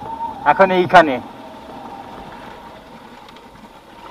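A man speaks briefly at the start. After that a motorcycle engine runs steadily and fairly quietly at low speed.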